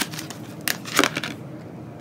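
Oracle cards being handled as one is drawn from the deck: a few crisp snaps and rustles of card stock, the clearest about two-thirds of a second and a second in.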